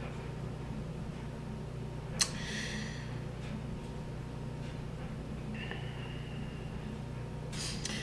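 Steady low hum of a quiet room, with one short, sharp breath in through the nose about two seconds in.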